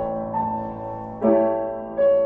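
Piano being practised slowly: a chord struck about once a second, each left to ring and fade before the next.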